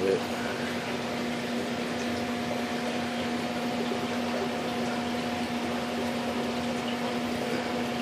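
A steady machine hum: a constant low tone with a fainter higher tone over a soft, even hiss, unchanging throughout.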